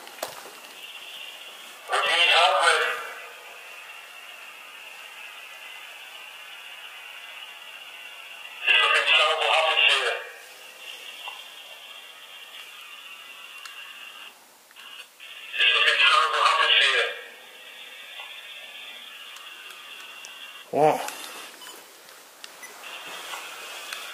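A recorded EVP session played back through a small handheld speaker: four short bursts of thin, tinny voice, about six seconds apart, over a steady hiss with a faint high whine.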